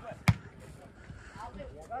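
A single sharp thud of a football being kicked, about a quarter second in, followed by faint voices from the pitch.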